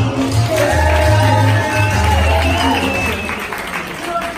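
Salsa music playing loudly, with a pulsing bass that drops away near the end and a singing voice over it, mixed with applause from the watching class.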